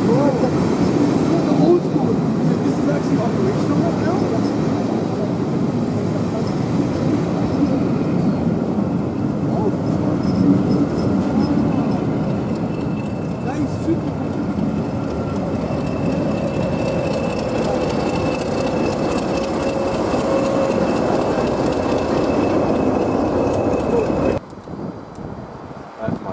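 Passenger coaches rolling slowly past on the rails, a steady rumble of wheels and running gear. In the second half a diesel locomotive at the rear of the train passes, adding a steady engine hum, before the sound stops abruptly near the end.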